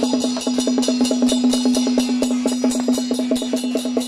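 Traditional Taiwanese gong-and-drum percussion accompanying a stilt troupe's performance: quick, even beats, roughly ten a second, over a steady ringing tone, with cymbal-like clashes on top.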